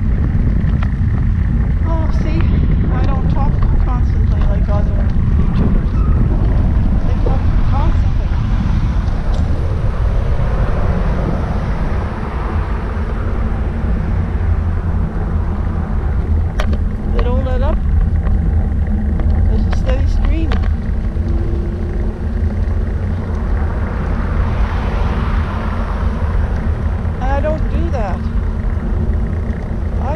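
Loud, steady low rumble of wind on a GoPro microphone riding on a moving recumbent trike, with road noise beneath it. A woman's voice speaks in short stretches, half buried in the rumble.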